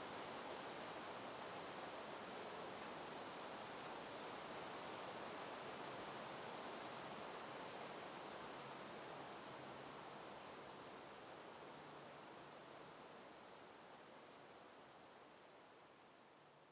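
Faint steady hiss of background noise with no distinct events, slowly fading out over the second half.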